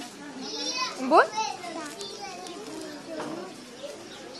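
Children's voices and chatter in the background, with one short spoken word rising sharply in pitch about a second in.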